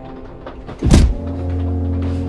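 Film-score sound design: a sudden deep boom that falls in pitch about a second in, then a sustained low bass drone under a soft held musical backdrop.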